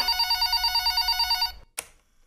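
Telephone ringing with a fast trill, cutting off about one and a half seconds in, followed by a single click near the end.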